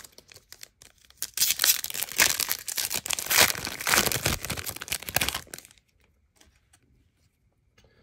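Foil trading card pack torn open and crinkled by hand: a burst of tearing and crackling wrapper that starts about a second in and lasts some four seconds.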